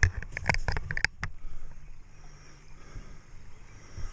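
A quick run of sharp taps and splashy clicks in the first second or so, as a trout thrashes in a landing net and the net and gear are handled. After that there is a quieter, low rustle of handling.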